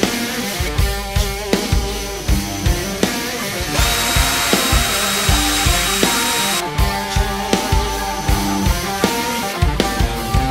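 Background music with a steady drum beat. From about four seconds in to nearly seven seconds, an Ozito cordless drill runs with a steady whine over the music, boring out the microphone port holes of a plastic GoPro skeleton case.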